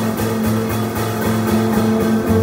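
Live piano, bass and drums group playing: held low plucked bass notes under a steady rhythm of cymbal strokes.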